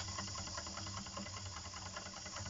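Wilesco D101 model steam engine running slowly, with a light, even ticking over a faint steady hiss of steam: the old whistle is leaking a little pressure.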